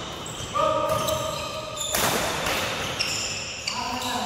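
Badminton rally in a large hall: a racket hits the shuttlecock sharply about two seconds in, among high squeals of court shoes on the floor.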